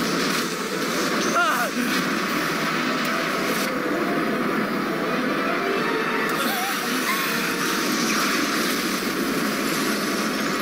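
Animated explosion sound effect for a huge energy blast: a long, steady, loud rush of noise with a low rumble underneath. A few short wavering pitched sounds rise over it, once shortly after the start and again about two thirds of the way through.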